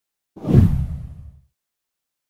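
A whoosh transition sound effect: one sudden swish that starts about a third of a second in, weighted toward the low end, and dies away within about a second.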